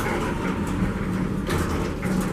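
Otis hydraulic elevator's doors sliding open as the car arrives at the second floor, over a steady low hum, with a click at the start.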